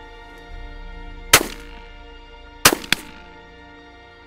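Three shotgun shots over background music: one about a second and a half in, then two in quick succession a little before three seconds.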